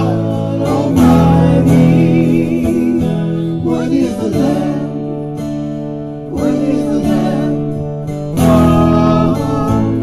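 Live acoustic worship song: a strummed acoustic guitar with a singing voice and a hand drum tapping out the beat.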